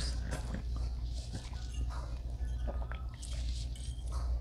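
Close-up chewing and mouth sounds of a person eating a tender bite of tandoori chicken tikka, with small scattered clicks, over a steady low room hum.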